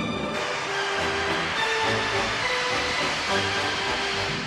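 Fire extinguisher discharging: a loud, steady hiss that starts a moment in, over orchestral film music.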